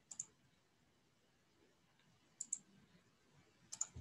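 Near silence broken by a few faint computer clicks: one just after the start, then a quick pair about two and a half seconds in and another pair just before the end.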